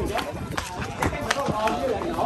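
Quick footsteps of someone hurrying in sandals across concrete, sharp short slaps about three or four a second, with people's voices talking around them.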